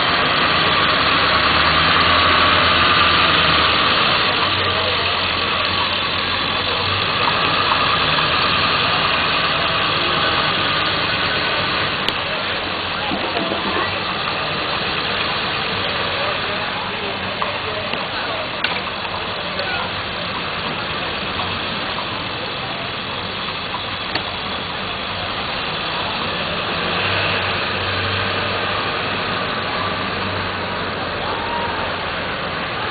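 Motor vehicle engines running at low revs, idling and moving slowly, with indistinct crowd voices and chatter underneath.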